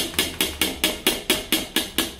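A rapid, even series of sharp knocks, about four and a half a second.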